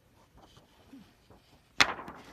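Handling noise from the hand-held printed DTF transfer-film sheet as it is flexed: faint rustles, then one sharp snap near the end.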